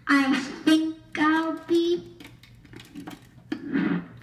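A young boy singing, about four held notes in the first two seconds, then quieter, broken sounds with a short burst near the end.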